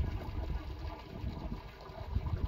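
Water running into a concrete livestock trough, a steady trickle and splash, over a low fluttering rumble.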